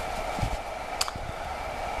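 Steady background hiss and low hum of room and recording noise, with one short sharp click about a second in.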